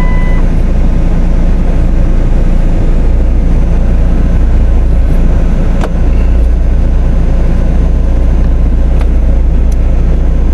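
Steady deep rumble of a car's engine, heard inside the cabin through a dashboard-mounted camera. A thin steady beep stops just after the start, and light clicks come about six and nine seconds in.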